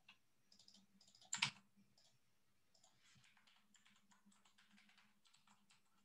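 Faint typing on a computer keyboard: scattered light key clicks, with one louder click about a second and a half in.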